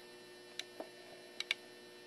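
Faint, steady electrical hum from the battery-charged electrolysis rig, with four small clicks in two close pairs as test leads are handled to connect an electromagnet.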